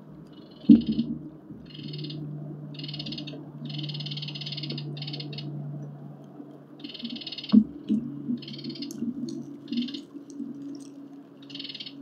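Two heavy knocks, about a second in and again past the middle, then lighter clicks and rattles, as a monkey clambers on a wooden bird-feeding station and pulls the hanging tube seed feeder. Short high-pitched animal calls repeat about once a second over a low steady hum.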